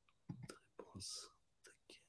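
A few faint, quietly murmured words from a person's voice, with a brief hiss like an 's' or 'ch' near the middle, in otherwise near silence.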